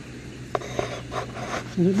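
Handling noise from a handheld camera being carried and turned: light rustling and rubbing, with a sharp click about half a second in. A voice starts near the end.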